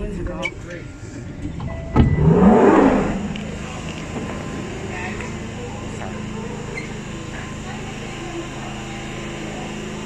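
London Underground train and platform: a knock about two seconds in, then a short rising whine, settling into a steady hum under passenger noise.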